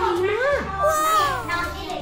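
Speech: a woman talking and children's voices, one high-pitched and falling about a second in, over background music with a steady low beat.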